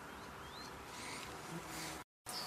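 Quiet open-air background in a grass field, with a brief high rising chirp about half a second in and a faint low buzz in the last half second.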